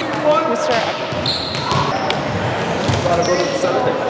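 Practice sounds in a large gym: several players' voices talking over one another, with volleyballs bouncing and being hit.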